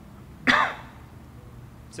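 A man gives a single short throat-clearing cough about half a second in, loud and close to the microphone.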